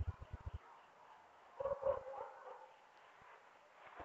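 A dog barking faintly in the distance, two or three short barks about a second and a half in. A few soft low thumps come just before, at the start.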